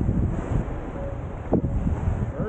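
Wind blowing across the microphone, a steady low rumble, over small waves washing onto a sandy beach.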